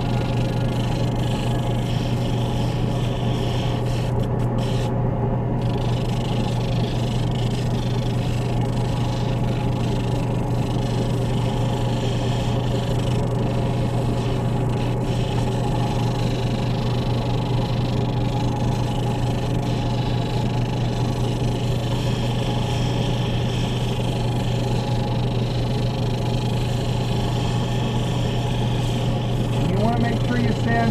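Lapidary end lap sander running: a steady electric-motor hum. A hard stone on a dop stick is held against its new, wet sandpaper disc, taking a light cut, with a soft hiss over the hum.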